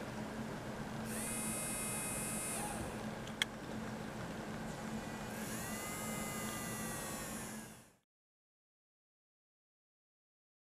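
Small brushed DC hobby motor switched on and off by an Arduino's motor on-then-off program. It runs with a faint high whine for about a second and a half, stops, then runs again for about two seconds, its pitch sagging near the end. A single click falls between the two runs, over a low steady hum.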